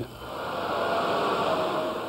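Outdoor street ambience: a steady rush of traffic noise that swells in during the first half-second and then holds, with a faint steady hum entering about halfway through.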